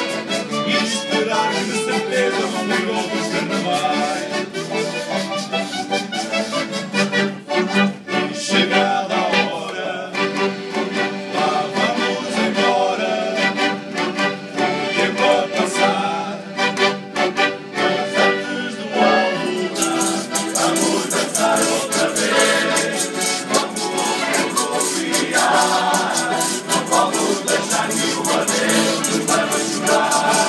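Live folk band of acoustic guitars, small plucked string instruments and a button accordion playing an instrumental passage of a bailinho's dance music. The sound grows brighter and fuller about two-thirds of the way through.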